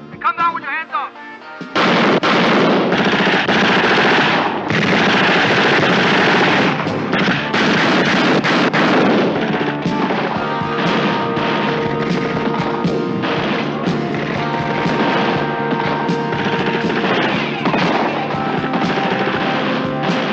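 Rapid automatic gunfire in a film shootout, dense and loud from about two seconds in. A music score comes in underneath about halfway through, with the shots continuing over it.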